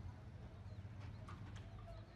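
Faint outdoor ambience with a steady low rumble and a few light knocks a little after a second in.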